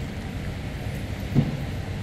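Low, steady background rumble of a busy railway station concourse, with one short louder sound about a second and a half in.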